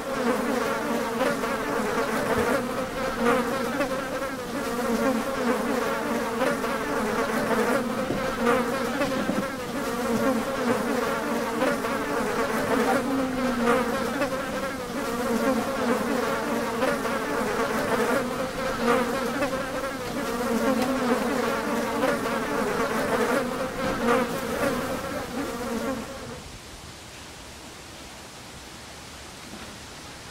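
Flying insects buzzing close by: a continuous low, wavering hum that cuts off suddenly near the end.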